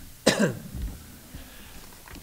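A man coughs once into a table microphone, a short sharp cough about a quarter second in, as he clears his throat.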